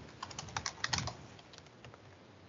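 Typing on a computer keyboard: a quick run of keystrokes over the first second, then a couple of fainter ones near the end, as a password is entered at a command-line prompt.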